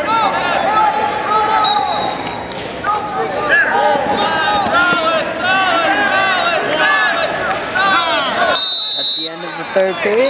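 Spectators and coaches at a wrestling match yelling over one another, many voices at once. Near the end the yelling drops away and a brief shrill tone sounds.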